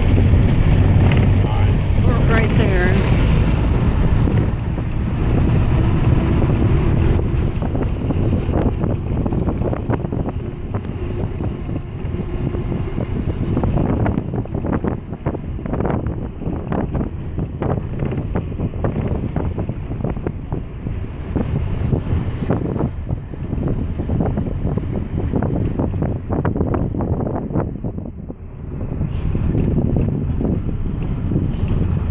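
A bus running along a rough road, heard from inside the cabin: a steady engine and road rumble with frequent short knocks and rattles as the bus jolts. A faint high-pitched whine comes in near the end.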